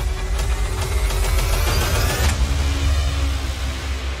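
Trailer sound design: a heavy, deep rumble with a bright hiss over it that cuts off suddenly a little over two seconds in.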